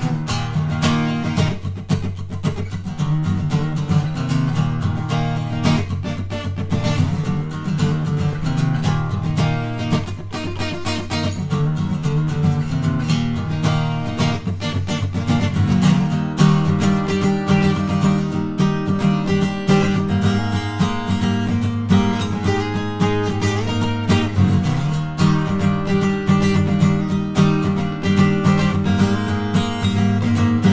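Solo steel-string acoustic guitar played instrumentally, strummed in a steady, busy rhythm.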